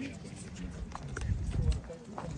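Low outdoor background rumble with a few faint scattered knocks and faint, indistinct voices in the distance.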